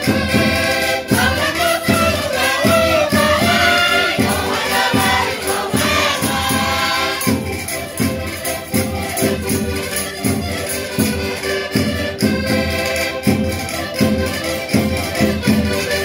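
Portuguese concertinas (diatonic button accordions) playing a traditional Minho folk tune live, with a steady beat of about two strokes a second. Voices sing along during the first half.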